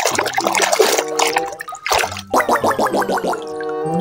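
Water sloshing and splashing as a hand churns soapy water in a plastic tub to wash a toy, for the first two seconds or so, over background music; the music then plays a quick run of notes.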